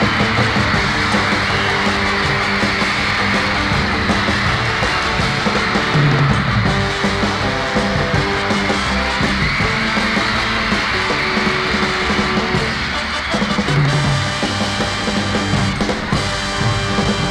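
Live band music playing steadily.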